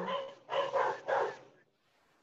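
A dog barking several times in quick succession, heard through a video-call connection.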